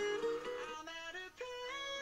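Music playing through a mini portable Bluetooth speaker: a melodic tune whose notes keep changing, with little bass.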